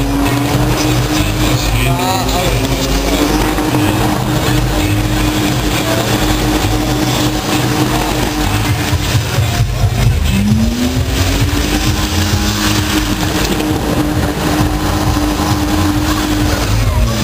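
BMW E30 doing a burnout, its engine held at high revs with the rear tyres spinning. The revs drop about ten seconds in, then climb back up and hold steady.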